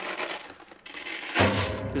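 Velcro ripping as the wooden top panel of a homemade piezo-triggered drum box is pulled away. About a second and a half in comes a sudden thud followed by a low ringing boom.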